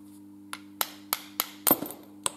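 A small hammer tapping a diesel injector nozzle part to knock it loose: five or six sharp, quick taps, starting about half a second in.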